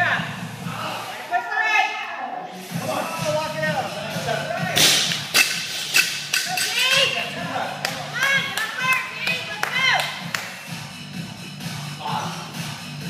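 A loaded barbell with bumper plates dropped onto the gym floor about five seconds in: a heavy thud followed by a couple of bounces. Background music and voices run throughout.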